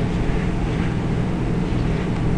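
Steady low hum and hiss of background noise, even throughout, with no distinct events.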